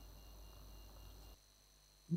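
Near silence: faint steady background hum and hiss that drops a little lower about one and a half seconds in.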